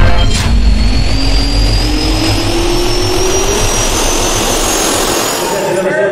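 Jet engine turbine spooling up: a rushing noise with a whine that rises steadily in pitch, with heavy low rumble at first, cutting off suddenly near the end.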